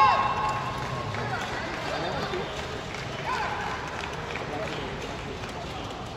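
Voices in a badminton arena between points: a loud drawn-out shout at the start, then spectators murmuring and calling out, with another short call about three seconds in.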